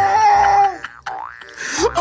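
Cartoon-style comedy sound effect of the boing kind: a held tone for most of the first second, then a quick upward slide about a second in and another rising slide near the end.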